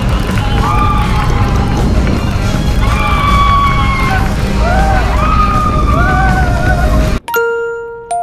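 Wind rushing hard over an on-ride camera microphone on a moving roller coaster, with riders' drawn-out yells rising and falling. About seven seconds in it cuts off suddenly to a chiming, glockenspiel-like music jingle.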